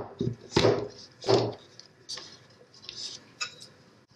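A metal cord-setting tool pushing the retaining cord into the groove of a wooden screen-printing frame: a few light clicks and knocks of the tool against the frame, two louder ones early, then fainter ticks.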